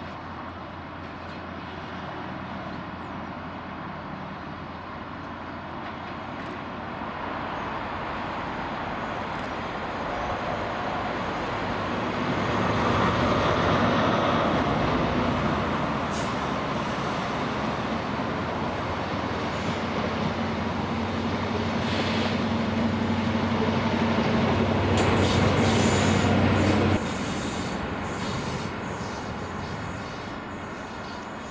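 A Network Rail HST measurement train with Class 43 diesel power cars passing: a steady diesel drone under rolling wheel noise that builds as the train nears and is loudest about halfway through. The second power car's drone swells again, with short clicks from the wheels on the track, before the sound drops off abruptly near the end.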